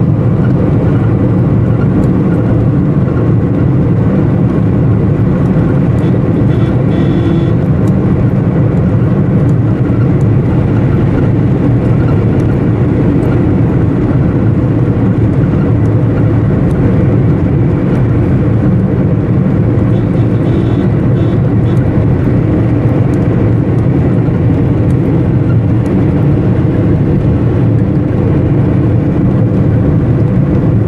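Steady engine and road noise heard from inside a moving vehicle, even and unbroken throughout.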